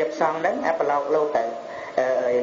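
A man's voice reciting in a drawn-out, sing-song delivery with some held notes: a Buddhist monk giving a dhamma talk in Khmer.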